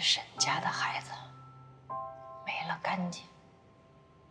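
A woman speaking Mandarin in two short phrases over quiet background music of held chords that change about every three seconds.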